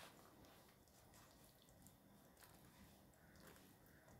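Near silence, with faint soft rustles and small scattered clicks of hands wrapping jute twine around a whole pink salmon on a plastic cutting board.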